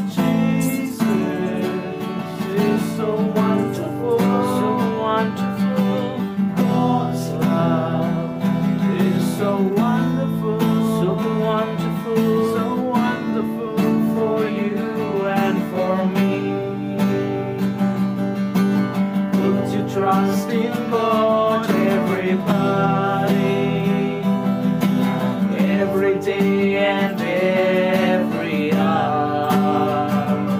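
Continuous music led by a strummed acoustic guitar.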